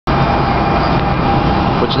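NJ Transit Arrow III electric multiple-unit train departing, a steady rumble of wheels and motors with a faint steady humming tone over it.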